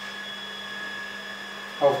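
Steady background hum with a faint high whine over room noise. A man's voice starts near the end.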